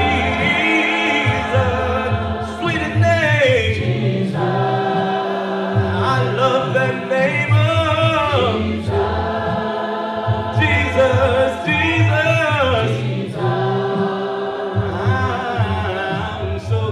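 Unaccompanied gospel singing: a man leads the song on a microphone with long held notes that slide between pitches, and a group of voices sings with him.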